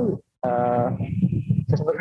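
A person's voice holding a drawn-out hesitation sound, a steady 'ehh' of about half a second, between bits of speech; talking picks up again near the end.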